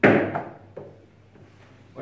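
A massé shot in French carom billiards: the cue, held nearly upright, strikes the cue ball sharply, followed by two fainter ball clicks as the balls collide.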